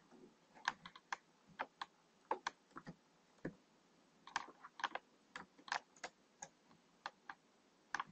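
Computer keyboard keys clicking faintly as code is typed, in irregular short runs of keystrokes with pauses between, the busiest run about four to six seconds in.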